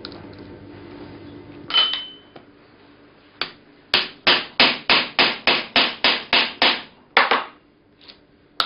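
A hammer striking a steel pestle set in a steel percussion mortar, metal on metal, to crush a bone fragment. There are a couple of single knocks, then a quick, even run of about ten blows at roughly three a second, and one last blow near the end.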